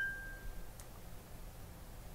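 A small bell's single clear ring dying away within the first second: the cue for the listener to pause and answer the question. A faint click follows, then quiet room tone.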